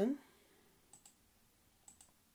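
Two short computer mouse clicks about a second apart, made while ticking a checkbox and pressing a Publish button, over a quiet room background.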